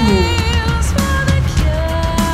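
Symphonic metal music with heavy bass and drums under long held, slightly wavering high notes.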